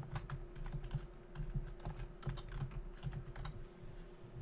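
Typing on a computer keyboard: a run of faint, irregular key clicks over a steady low hum.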